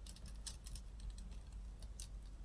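Faint, irregular light clicks and taps from fingernails and a hand handling a dish sponge, several small ticks about half a second in and a couple more near the end, over a low steady room hum.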